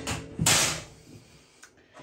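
A man's breathy laughter: two short huffs of breath in the first second.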